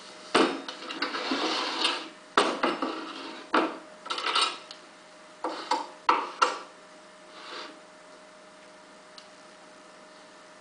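Plaster ocarina mould being opened and handled on a workbench: about six knocks of plaster on plaster and on the bench, mixed with scraping, over the first seven seconds. A faint steady hum runs underneath.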